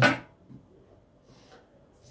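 The end of a man's spoken word, then a quiet room with faint, brief rustles of baking paper on a baking tray, the clearest about one and a half seconds in.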